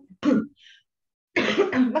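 One short cough from a person.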